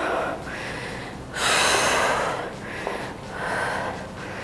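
A woman breathing hard after a set of exercise: three heavy, noisy breaths, the longest and loudest about a second and a half in.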